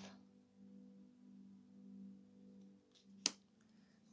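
A quiet room with a faint steady hum in two low tones. About three seconds in there is one sharp click as a card is handled at the oracle deck.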